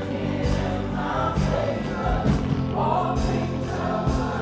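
Live gospel praise-and-worship music: a band over steady low bass notes, with several voices singing together in a choir-like sound.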